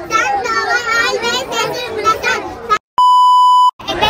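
Children talking, then near the end a loud, steady electronic beep tone lasting under a second, cut in with dead silence on either side: an edit bleep dropped in at a cut.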